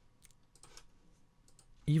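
A few faint clicks of a computer mouse in the first second, then a man's voice starts right at the end.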